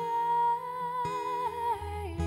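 A woman singing a long, high held note live, wordless or on a vowel, which wavers and steps down in pitch near the end. A low bass line comes in about three-quarters of the way through.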